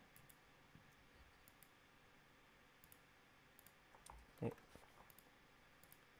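Faint, scattered computer mouse clicks over near-silent room tone, with a brief murmur of a voice about four and a half seconds in.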